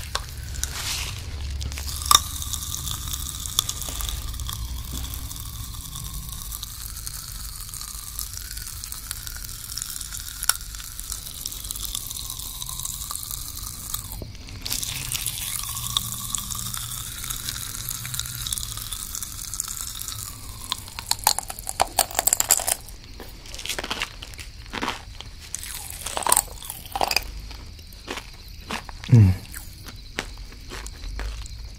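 Pop Rocks popping candy crackling inside an open mouth close to the microphone: a dense, fine fizz of tiny pops. In the last third it turns into louder, separate sharp pops and crunching mouth sounds as the candy is chewed.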